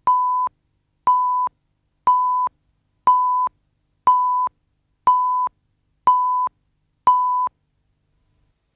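Countdown leader beeps: eight identical short electronic beeps, one each second, each about half a second long, at one steady mid pitch, marking off the numbers of the countdown.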